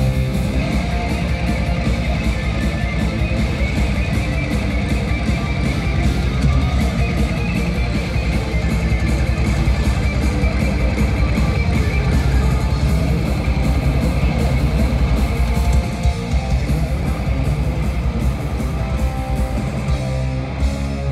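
Live power metal band playing an instrumental passage led by several electric guitars over a fast, driving beat, recorded from the audience.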